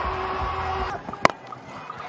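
Stadium crowd din that drops away about a second in, then a single sharp crack of a cricket bat striking the ball.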